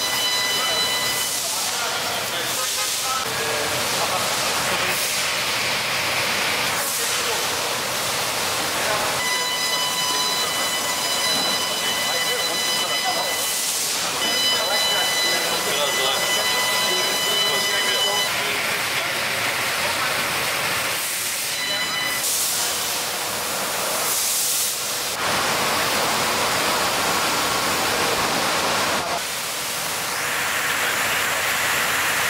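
Steady loud hiss with indistinct voices underneath. A thin high whine with evenly spaced overtones comes and goes, present at the start, again from about ten to eighteen seconds in, and briefly later.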